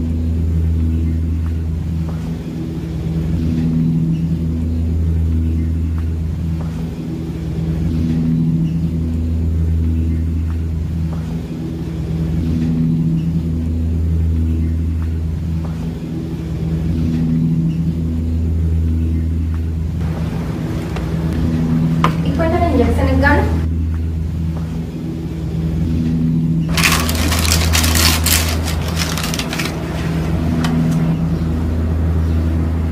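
A low droning tone, the kind used under a film scene, swells and fades about every four seconds throughout. A brief voice comes in about two-thirds of the way through, and a burst of rustling noise follows near the end.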